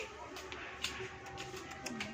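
Faint background voices with a few light clicks, and a voice starting up near the end.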